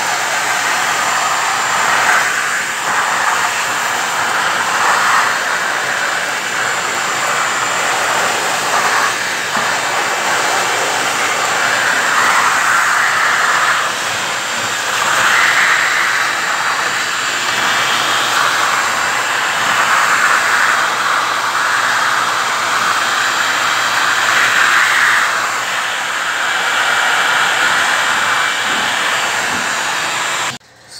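Shop vacuum running, its hose nozzle sucking up dirt and debris from a greasy belly pan. The rush of the suction swells and eases every few seconds as the nozzle moves, over a thin steady motor whine.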